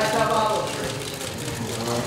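Voices of people around the staredown talking over one another, one man's voice clearest in the first half second before fading into a general murmur.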